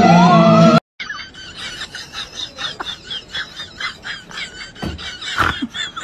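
Loud music with singing cuts off abruptly under a second in. It is followed by a quick, continuous run of short, high chirping squeaks, several a second, with a couple of soft thumps near the end.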